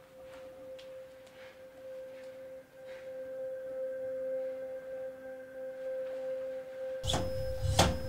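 A single held tone from a dramatic film-score drone, steady and unchanging. About seven seconds in, a louder music track with a heavy bass beat cuts in.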